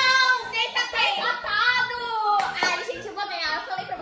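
Two young girls' voices exclaiming in drawn-out, sing-song tones and laughing, with two sharp hand claps about two and a half seconds in.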